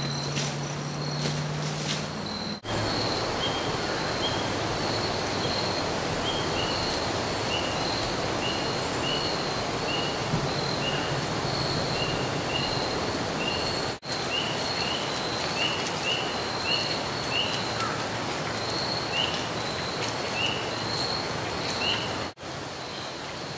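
Autumn woodland ambience: a steady rushing background with a continuous high, pulsing insect trill and a short high chirp repeated about once or twice a second. The sound drops out briefly twice.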